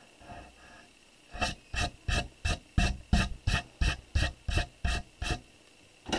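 Pencil eraser rubbed briskly back and forth on watercolor paper to lighten the sketch lines: about a dozen even strokes at roughly three a second, starting a little over a second in and stopping shortly before the end.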